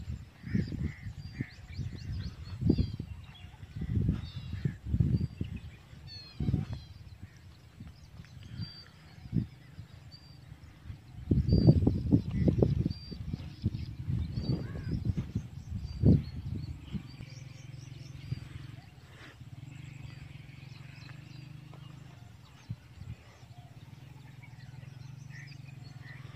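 Birds chirping in short high calls throughout, over irregular low thumps and rumbles. A steady low hum sets in about two-thirds of the way through.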